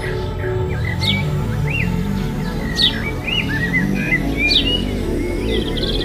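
Small birds chirping, with four sharp high calls that fall in pitch, spaced about a second and a half apart, over background music.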